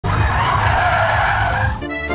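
A car's tyres squealing through a hard turn on tarmac, with the engine running underneath. The squeal cuts off suddenly near the end as accordion music begins.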